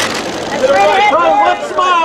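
Several photographers shouting at once in overlapping voices, calling for a pose.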